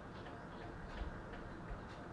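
Low, steady background noise with a few faint taps, the clearest about a second in and another shortly before the end, of a finger tapping a phone's touchscreen to advance slides.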